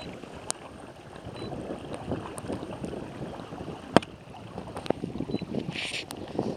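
Water splashing and rushing along the plastic hull of a moving Hobie kayak, with a few sharp knocks, the loudest about four seconds in.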